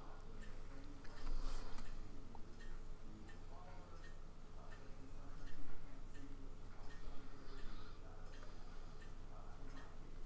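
Faint clicks and light handling noise as a plastic cap is screwed onto a resin bottle and the bottle is lifted and set aside, over a steady low electrical hum.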